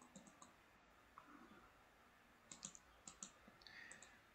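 Faint computer mouse clicks over near silence: a few quick clicks at the start, then more in quick groups in the last second and a half.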